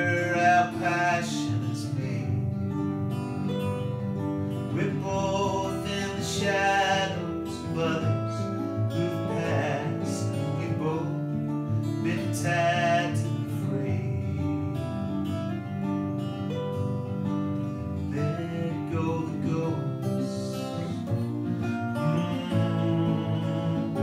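Two acoustic guitars playing a song together live, a continuous instrumental passage.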